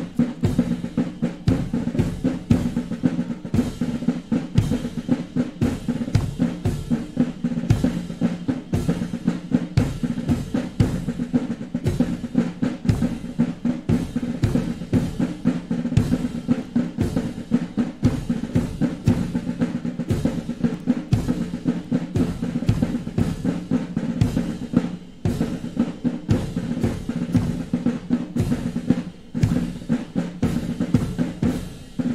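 A military march played by a band, with snare and bass drum keeping a steady marching beat under sustained band tones.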